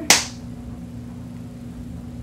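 One sharp click just after the start as the applicator wand of a NYX Fat Oil Lip Drip tube is pulled out, over a steady low hum.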